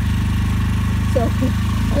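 Small portable generator engine running steadily, a constant low pulsing hum.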